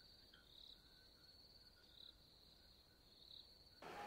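Near silence with faint crickets: a steady high trill and a few soft chirps.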